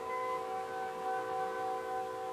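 The opening music of an early sound-on-disc film, played by a small orchestra, ending on one long held chord over faint disc hiss.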